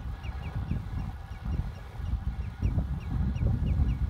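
A bird calling in a rapid series of short, high, falling notes, about four a second, stopping near the end. Underneath is a steady low rumble of wind on the microphone from riding a bicycle.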